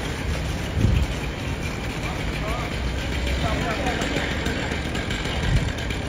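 Steady low rumble of an idling engine under street noise, with faint voices in the background and a single thump about a second in.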